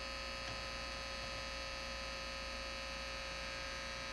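Output of a homemade VLF loop-antenna receiver: a steady mains hum with many fixed overtones over a hiss, unchanging throughout. It is interference from the house wiring and the nearby DVD recorder's motors and solenoids, which remains even with the box loop nulled for minimum hum.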